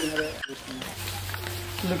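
Faint voices of a few men talking, over a steady low hum that begins about a second in.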